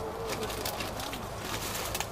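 A dove cooing in low, wavering notes, with a few sharp clicks over a steady outdoor background.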